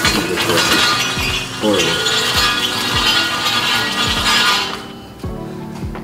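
Background music with a steady beat, over a clattering rattle from a window shade being drawn by its pull cord. The rattle stops suddenly about five seconds in.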